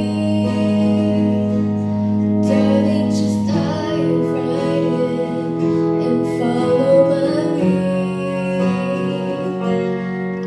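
A young woman singing lead over a live band, with guitars and keyboard holding slow sustained chords that change every few seconds.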